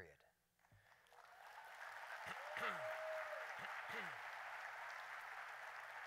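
Audience applauding in a large hall, building up from about a second in and then holding steady, with a couple of short falling cheers from the crowd.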